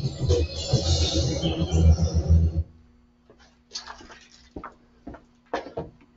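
Closing music of a video playing through a TV speaker, bass-heavy, cutting off abruptly about two and a half seconds in. After it, a few faint clicks and knocks over a steady low hum.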